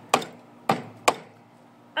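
Chef's knife hacking into the hard shell of a coconut: three sharp strikes in the first second, then a pause.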